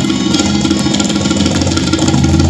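Tabla played in many quick strokes over a sustained harmonium drone.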